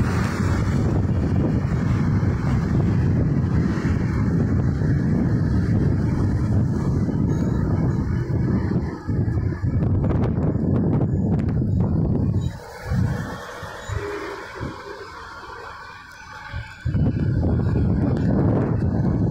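Road traffic on the street below a footbridge, under a heavy low rumble of wind on the microphone. The rumble drops away for a few seconds near the end, leaving the traffic quieter.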